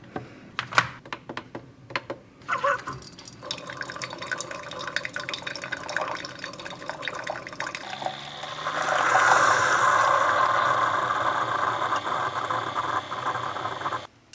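Single-serve coffee maker brewing into a ceramic mug: a few clicks as the mug is set in place and the machine is started, then the machine runs, and from about eight seconds in hot coffee streams loudly into the mug.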